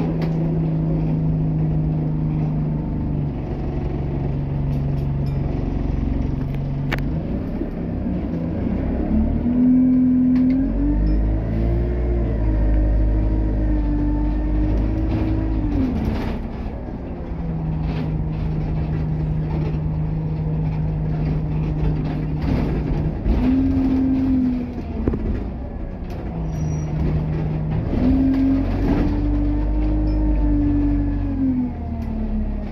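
Single-deck bus engine heard from inside the saloon: a steady idling hum, then a higher, climbing note with deep rumble as it pulls away about ten seconds in. It drops back to the steady hum a few seconds later and rises again near the end, with scattered knocks and clicks from the body.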